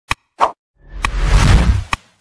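Sound effects of an animated like-and-subscribe button: a short mouse click, a pop, then a rising whoosh with a deep rumble and sharp clicks, ending in one more click.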